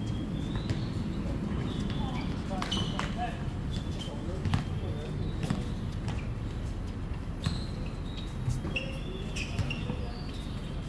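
Basketball bouncing on a hard outdoor court: a handful of separate sharp thuds at uneven intervals, with players' voices in the background.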